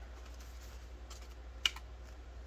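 Polymer banknotes being handled and shuffled between the fingers, with light crisp clicks and one sharp click about one and a half seconds in, over a steady low hum.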